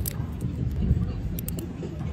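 A few faint clicks from the twist dial of a bunion-corrector toe brace being turned by hand, over a steady low outdoor rumble.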